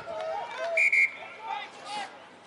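Referee's whistle blown twice in quick succession, two short high blasts about a second in, signalling a penalty. Players' voices can be heard faintly around it.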